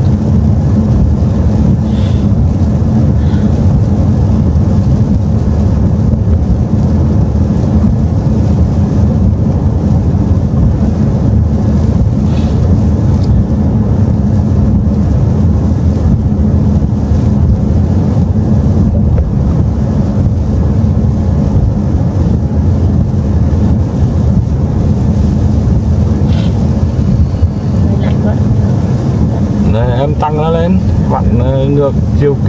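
A car driving on a wet road, heard from inside the cabin: a steady, loud low rumble of tyres and engine.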